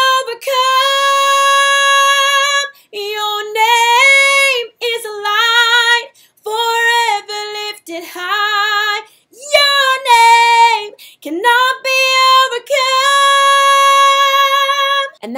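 A woman singing unaccompanied in several phrases with short breaths between, holding high notes with vibrato. She is demonstrating a powerful mixed voice that blends the pharyngeal register with chest and head voice, rather than yelling in chest voice or flipping into head voice.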